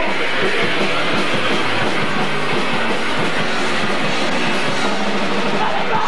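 Punk rock band playing live, electric guitars in a loud, dense wall of sound.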